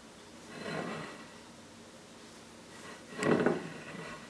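A plate carrying a galette des rois is pushed and dragged on a tabletop in an attempt to spin it. It makes a soft scrape just under a second in and a louder, brief scrape a little after three seconds in; the plate does not turn freely.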